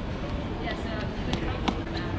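A child's running footsteps on a tile floor, a few sharp slaps, over faint background voices.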